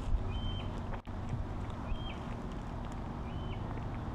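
A bird repeating a short, high, flat whistle four times, about every second and a half, over a steady low outdoor rumble.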